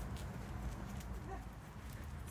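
Faint scattered ticks and taps of footsteps on asphalt: a rough collie trotting and a person walking.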